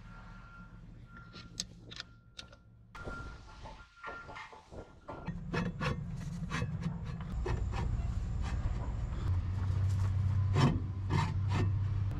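Stainless steel jet pump impeller being worked onto its shaft inside the metal pump housing: irregular scraping and clicking of metal on metal, sparse at first and busier in the second half. A low steady hum underneath grows louder about halfway through.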